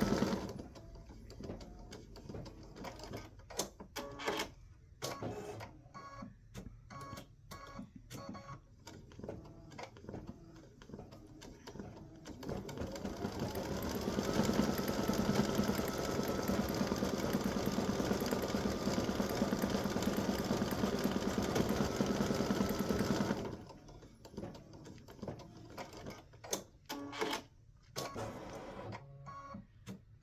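Baby Lock Visionary embroidery machine stitching small dots of a design. For the first dozen seconds it gives scattered clicks as it stitches slowly and jumps between dots. About 13 seconds in it speeds up with a rising whine, runs steadily at full speed, and stops abruptly about 23 seconds in, leaving a few more clicks.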